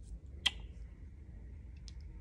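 A single sharp mouth click about half a second in, with a fainter click near the end, over a low steady room hum.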